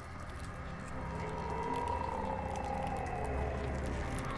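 Horror-film sound design: a steady low drone under an eerie moaning tone that slides slowly down in pitch over a couple of seconds, with faint scattered ticks.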